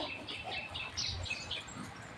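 Small birds chirping in short, high, repeated notes, about three a second.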